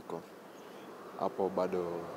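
A man's drawn-out hesitation sound, a held 'eeh' filler, starting a little past halfway after a brief pause in his talk.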